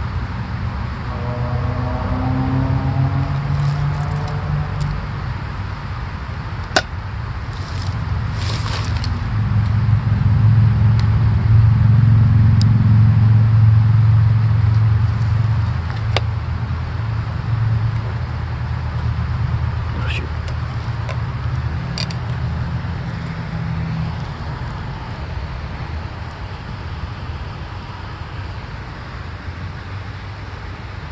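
Low rumble of road traffic, with a vehicle passing that swells to its loudest around the middle and then fades. A few sharp clicks sound over it.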